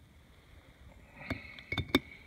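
A few short, light knocks of an ice brick bumping against the ice-brick wall as it is handled into place, in the second half, the last one the loudest.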